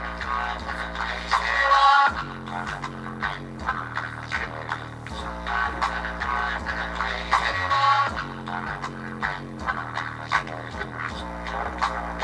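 Electronic music with deep, held bass notes, played through a bare, unboxed Dayton Audio woofer driver whose cone is patched with tape.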